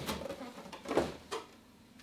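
Cardboard boxes being handled on a table: a few short scrapes and knocks of cardboard rubbing and bumping, over the first second and a half.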